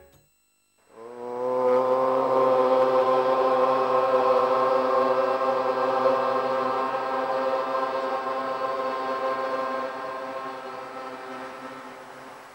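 A man chanting one long, steady note on a single low pitch. It starts about a second in and fades toward the end.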